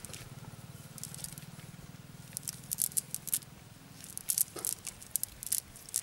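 Wet nylon cast net and mud being handled by hand, making irregular crackling, squishing clicks that come in quick clusters in the second half.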